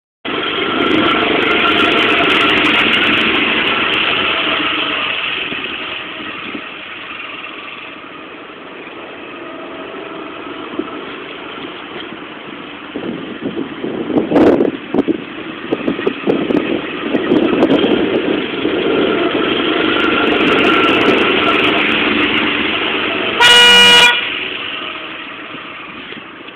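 Small go-kart engines running, growing louder and fainter as the karts come and go. A short, loud horn-like tone sounds about two seconds before the end.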